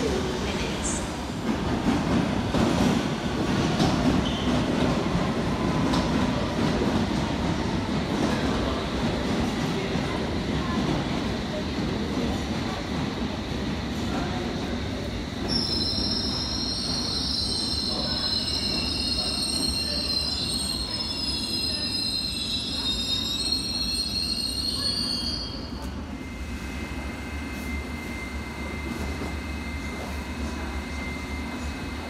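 London Underground S7 stock train rumbling along the platform, then a high-pitched squeal of steel wheels on rail for about ten seconds from the middle. Near the end it gives way to a quieter steady hum.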